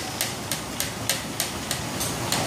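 Pump driving a hydraulic jack that presses a steel pin into a buckling-restrained brace connection: short hissing pulses, evenly spaced at about three a second, over a low rumble.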